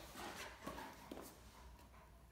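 Faint scuffling and a few soft clicks from a Great Dane and a Great Dane puppy tussling on a tile floor, fading away after about a second.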